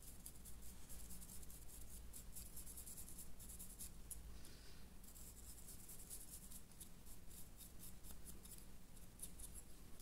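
Faint, rapid scratching of a dry brush's bristles scrubbed over the textured stonework of a painted dice tower.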